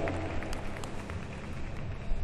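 Background sound of a large indoor gymnastics arena: a steady low hum under an indistinct haze of noise, with a few faint knocks.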